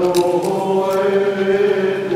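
Maronite liturgical chant sung in a slow single melody line, one note held for about a second.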